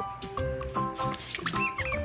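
Background music with a bouncy melody of short held notes. Near the end comes a quick run of short, high-pitched squeaks from a squeaky plush duck toy as a dog mouths it.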